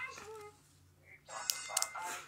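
A voice trails off, then after a short quiet gap comes a rustle of handling with two sharp clicks close together near the end.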